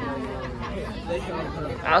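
Indistinct chatter: several voices talking at a low level, with no clear words.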